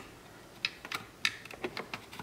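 A string of short, sharp plastic clicks from a Volkswagen Jetta master power window switch pack being pried and pulled up out of the retaining tabs in its door-panel bezel with a flat blade screwdriver.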